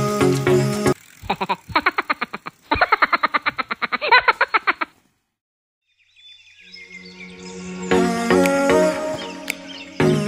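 Background music that breaks off about a second in. A rapid, uneven train of pulses follows for about four seconds, then a second of silence, and music fades back in.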